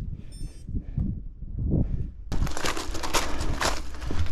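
Mountain bike tyres crunching over loose gravel, a dense crackle that starts abruptly about two seconds in. Before that there is a low rumble and a brief high chirp.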